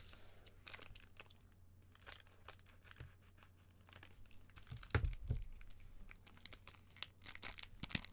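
Foil trading-card pack crinkling as it is handled, snipped open with scissors and pulled apart, giving a run of small sharp crackles. A louder, lower short sound comes about five seconds in.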